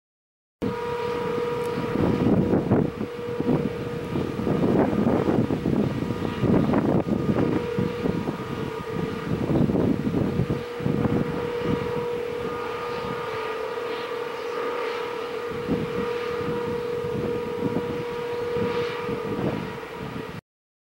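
An outdoor warning siren sounding one steady note under a storm sky, with gusts of wind buffeting the microphone, heaviest in the first half. The sound starts and stops abruptly at both ends.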